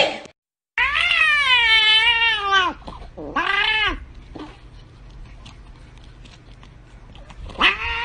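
A cat meowing. There is a long drawn-out wavering call of about two seconds, then a short second call, and a third begins near the end.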